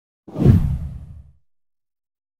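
A deep whoosh sound effect that swells quickly about a quarter of a second in and fades away over about a second.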